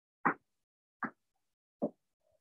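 A person's short, forceful exhalations, three of them at an even pace of about one every 0.8 s, in time with alternating knee raises during a workout.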